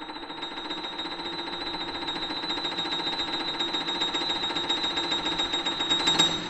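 Steinway grand piano playing a rapid, evenly repeated figure of high notes, with the strikes held ringing together, growing steadily louder throughout.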